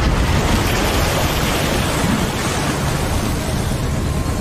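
Loud, steady rush of noise from a magical blast sweeping wind and dust across a forest floor, easing slightly in the second half.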